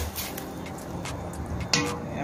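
A wooden spoon stirring kidney beans and liquid in a stainless steel pot, with a couple of sharp knocks against the pot, one near the start and one near the end. Soft background music runs underneath.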